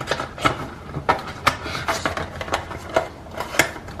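Scattered light clicks, taps and rustles of an unboxing: a leather pouch and its packaging being handled on a marble tabletop, irregular and a dozen or so over a few seconds.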